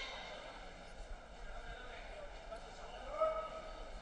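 Faint voices in a large sports hall, with one short call about three seconds in that is the loudest sound.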